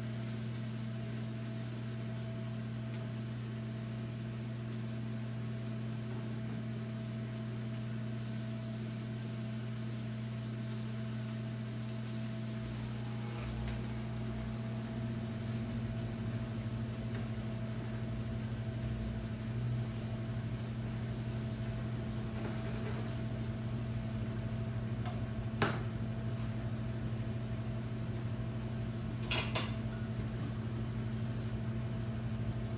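Chopped onion, tomato and peppers cooking in a frying pan stirred with a spatula, over a steady low electrical hum. A sharp clink sounds about 26 seconds in, and a short clatter near the end.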